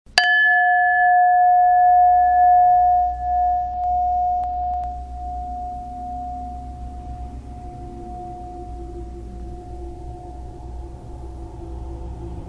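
A bell struck once just after the start, its ringing tone with several overtones fading slowly over many seconds, over a low steady hum.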